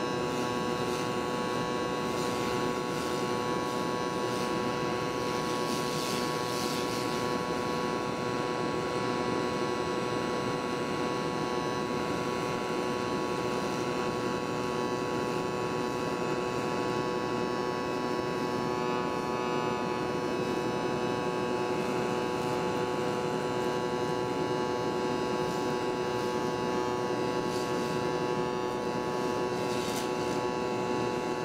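Wire-feed (MIG) welding arc on a steel plate, a steady buzzing hum that holds at an even level throughout.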